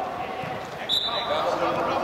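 Football match in a large indoor hall: players' voices and shouts with the knocks of the ball being kicked on artificial turf. A brief high steady tone sounds about a second in.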